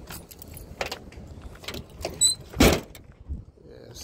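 Footsteps of someone walking on asphalt with a camera in hand: a few irregular knocks and footfalls with a light jingle like keys, the loudest thump a little after halfway.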